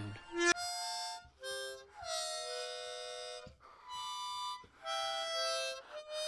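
Harmonica playing a short tune of held chords, about five of them with brief breaks between.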